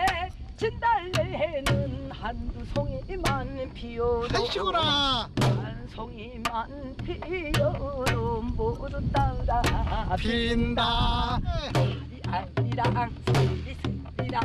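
A woman singing a Korean folk song in a full traditional voice, with wide vibrato and long held notes. She is accompanied by sharp strokes on a buk, a Korean barrel drum.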